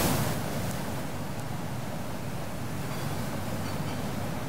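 Steady, even background noise with no distinct source, like outdoor night ambience, with a short breathy sound at the very start.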